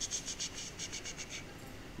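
Rapid light clicking: about a dozen short, high ticks over the first second and a half, then only faint room hiss.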